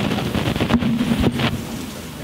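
Audience clapping: a dense spatter of claps, with two louder knocks, one under a second in and one about a second and a quarter in, fading toward the end.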